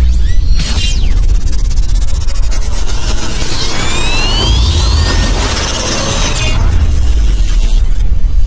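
Channel logo intro sting: loud electronic music with heavy low booms and whooshing sound effects, with rising sweeps in the middle.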